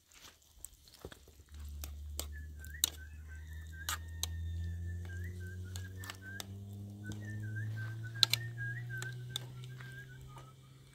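A metal spoon clicking and scraping against a small pot of sauce as it is stirred, over a low hum that comes in about a second and a half in and rises slowly in pitch, with a thin wavering whistle above it.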